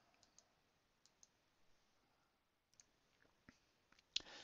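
Near silence, with a few faint computer mouse clicks scattered through it.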